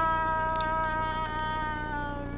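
A girl's voice holding one long, high wailing note that slowly falls in pitch.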